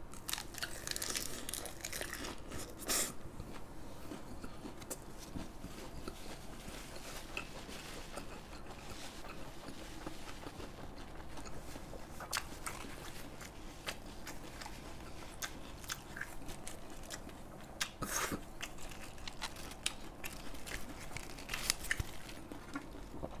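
A person biting into a fresh lettuce wrap and chewing it with the mouth close to the microphone: loud crisp crunches in the first three seconds, then quieter chewing with scattered mouth clicks, and one sharper crunch about 18 seconds in.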